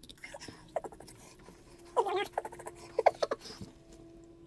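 Short squeaks and small clicks from a clear silicone mould rubbing against nitrile gloves as it is handled, in two squeaky bursts about two and three seconds in, over a faint steady hum.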